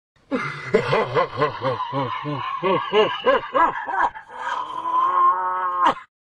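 A man's deep, hearty laugh, a run of 'ha's at about four a second, ending in one long drawn-out held cry that rises slightly and cuts off suddenly.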